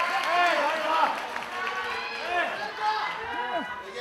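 Several voices shouting drawn-out yells that rise and fall in pitch, overlapping one another over a steady crowd hum in a large hall.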